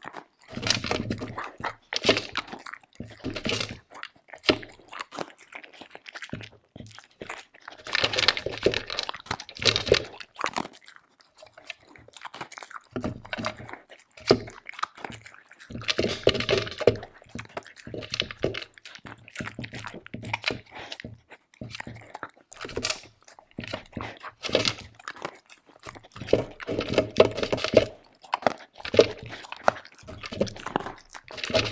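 A Samoyed crunching and chewing dry kibble close to the microphone, in bursts of a second or two with short pauses between mouthfuls as she picks more from a plastic slow-feeder bowl.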